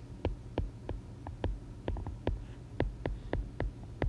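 Stylus tapping and clicking on a tablet's glass screen while handwriting a few words: an irregular run of sharp little ticks over a steady low hum.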